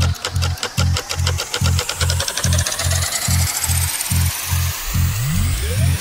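Electronic dance remix in a build-up: a steady pounding bass kick about two and a half beats a second under a rising sweep. Near the end a falling pitch glide leads into the drop.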